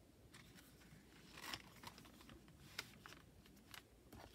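Faint paper handling: a handmade journal's pages being turned and pressed flat, with soft rustles and a few light taps, the sharpest nearly three seconds in.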